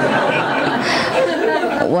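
An audience laughing and chattering at once, many voices overlapping.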